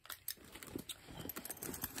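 Faint, irregular light clicks and rustles of small accessories being handled and reached into a leather handbag.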